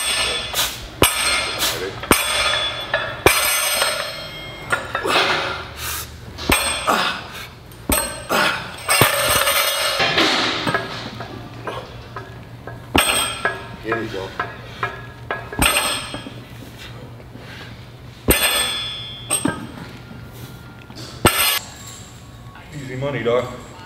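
Music and voices over repeated metallic clanks and knocks from a trap bar loaded with rubber bumper plates as it is lifted and set down on the gym floor.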